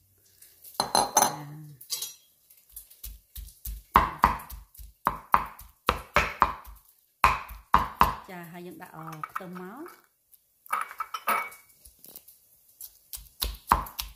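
Cleaver chopping ground pork belly on a thick wooden chopping block: quick repeated strikes, several a second, starting about three seconds in.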